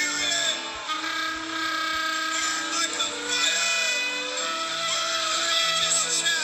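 Live worship music: a man's voice singing long, held notes into a microphone over instrumental backing.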